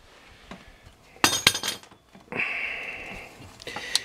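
Steel tool and brake parts clinking, with a few sharp clinks about a second in, then a brief scrape, as a C-clamp is taken off a car's front brake caliper and the caliper and old pad are handled.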